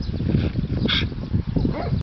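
Small dog whimpering, with one short, sharp yip about a second in.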